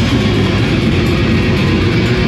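Heavy metal band playing live and loud: distorted electric guitars, bass and drums in a dense, unbroken wall of sound.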